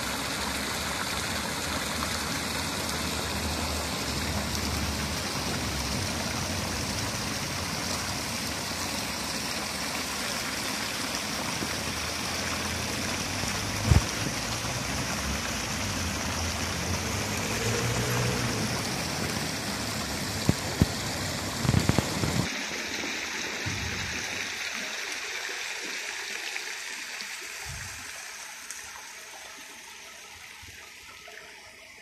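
Fountain jets splashing into a stone basin: a steady rush of falling water that fades gradually over the last several seconds. A few short knocks stand out, once about halfway and a cluster a little later.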